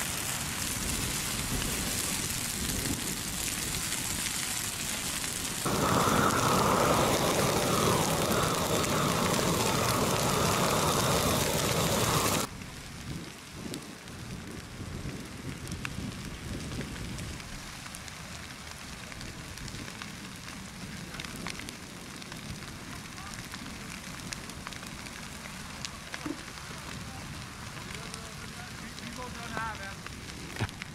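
Large brushwood bonfire burning, with a loud rushing noise that grows louder about six seconds in and drops off suddenly about twelve seconds in. After that, the fire is heard more faintly, crackling with scattered sharp pops.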